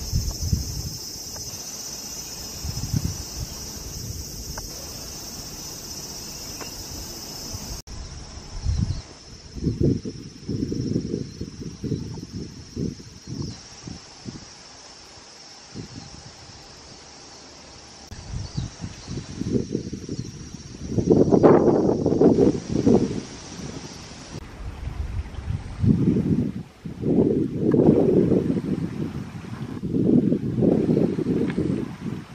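A steady high-pitched insect chorus, strongest in the first few seconds and fading out about two-thirds of the way through. From about a quarter of the way in, gusts of wind buffet the microphone as irregular low rumbles, loudest in the second half.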